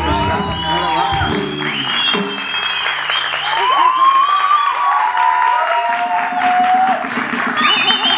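Studio audience applauding and cheering with whoops, while the house band's entrance music ends about a second in.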